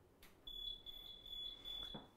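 A faint, steady, high-pitched electronic tone with a low hum under it, starting about half a second in after a faint click.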